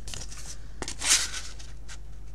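A sheet of cardstock rustling and sliding as it is handled against a paper punch, with a light click a little before a short burst of rustling and another light click near the end.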